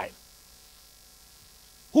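Faint steady electrical mains hum, a buzz of many evenly spaced tones, in the broadcast audio during a pause in speech.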